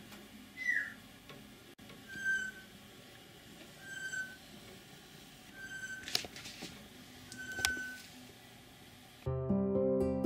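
A short whistled note repeats five times, about one every two seconds; the first slides down in pitch and the rest hold one steady pitch. Just before the end, soft plucked background music comes in.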